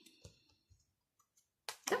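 Tarot card being drawn and handled: a few faint clicks, then a sharper, louder click near the end, just before speech resumes.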